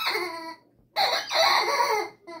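Orange rubber squeaky toy squealing as the dog bites it: one squeal at the start, then a longer, brighter one about a second in.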